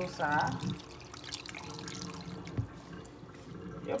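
Water dripping and splashing in a steel pot of whole raw shrimp as they are rinsed by hand, with a soft thump about two and a half seconds in.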